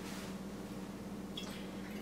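Faint sounds of water being swirled in a glass Erlenmeyer flask over a quiet, steady low hum, with a faint light tick about a second and a half in.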